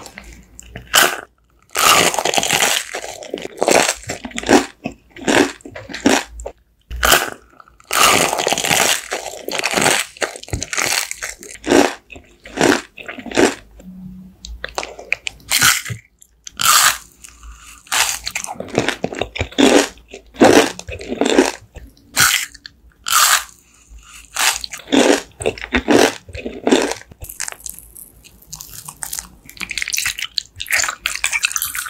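Close-miked biting and chewing of candies and jelly sweets: a long run of sharp, crunchy bites, some quickly repeated, with longer stretches of chewing in between.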